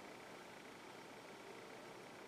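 Near silence: faint, steady room tone.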